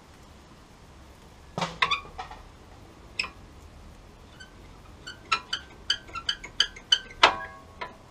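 Steel brake-pad retaining clips and pads clicking and clinking against the caliper carrier as they are worked loose by hand. A quick run of light metallic clicks, about four or five a second, ends in one louder ringing clink.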